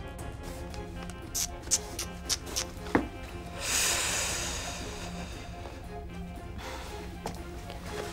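Soft drama background music with held notes. A few small clicks come in the first three seconds, and a hissing swell rises and fades around the middle.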